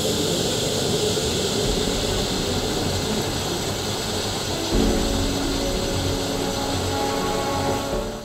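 Concentrated hydrogen peroxide decomposing violently on a potassium permanganate crystal, giving a steady, loud hissing fizz as oxygen and steam boil off the foaming, near-boiling mixture. Faint background music comes in about halfway.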